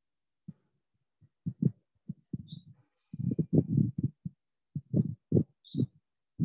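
A run of short, muffled low thumps at irregular intervals, some in quick pairs, each cut off abruptly.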